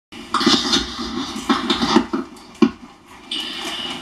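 Crinkly plastic snack bag being handled, in several rustling bursts, with a sharp tap about two and a half seconds in.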